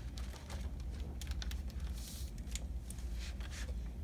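Pages of a hardcover picture book being turned and handled: light paper rustles and small clicks over a low steady room hum.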